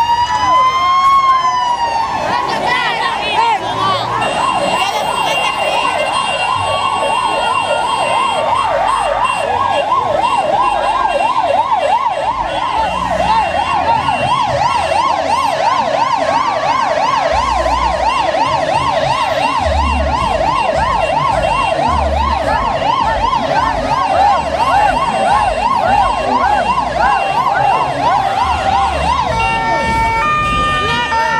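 An electronic vehicle siren sounding in a street motorcade. It winds up to its top pitch at the start, then switches to a fast up-and-down yelp that runs on steadily.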